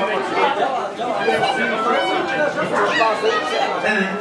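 Crowd chatter: many voices talking at once, steady throughout.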